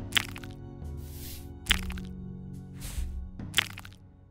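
Sharp crack sound effects, three in all about every second and a half, each led by a short swish, dubbed onto an animated metal pick plucking plugs from a tonsil. Soft background music with held notes runs underneath.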